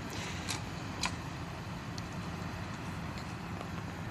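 Steady low rumble of road traffic and idling vehicles, with two faint clicks in the first second or so.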